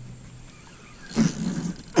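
Hookset on a gar with a spinning rod: about a second in, a sudden rush of noise as the rod is swept back hard, lasting about a second.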